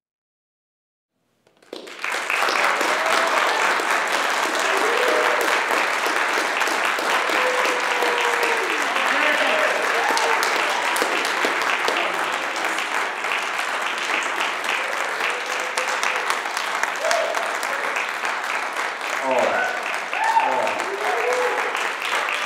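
Audience applauding at the end of a solo piano performance, starting suddenly about a second and a half in and keeping steady, with some voices calling out among the clapping.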